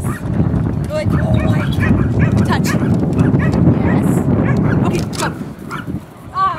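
Wind buffeting the microphone with a loud, low rumble that eases off about five seconds in, with a dog's short high yips and indistinct voices over it.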